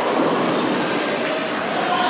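Steady rolling rumble of a busy bowling alley: balls running down the lanes and pin action across many lanes at once, with faint tones coming in about halfway through.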